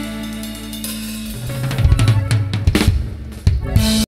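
The closing bars of a norteño band's song: the accordion and bass hold a final chord, then about a second and a half in the drum kit breaks into a busy fill of bass drum, snare and cymbal hits that ends the song.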